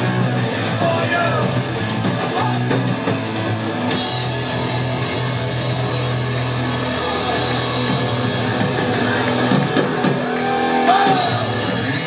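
Live punk rock band playing: electric guitar, bass and drum kit, with some singing.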